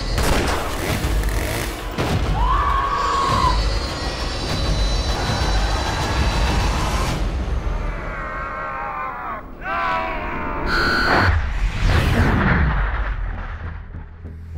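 Dramatic horror-trailer score with heavy booming hits and sharp sound effects, layered over a deep rumble. Pitched, swelling glides rise and fall between the hits before the sound drops away near the end.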